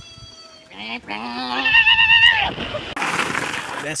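A man's loud, drawn-out yell with a shaky, wobbling pitch that climbs and then falls away, followed about three seconds in by a second of loud rushing noise.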